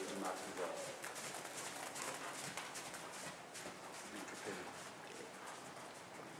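Hoofbeats of a ridden horse moving on the sand footing of an indoor riding arena: a steady run of soft, muted footfalls.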